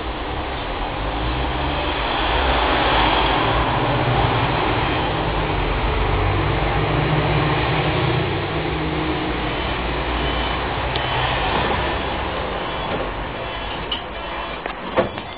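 Tatra T6A2D tram heard from inside the passenger car while running along the track: a steady running noise with a low hum, growing louder about two seconds in.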